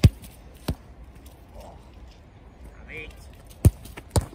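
Sharp thuds of a football being struck and caught in a goalkeeper's gloves: two in quick succession at the start, the first the loudest, and another near the end.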